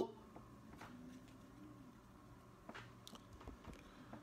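Faint handling of a stack of trading cards, with a few light clicks and rustles in the second half against near silence.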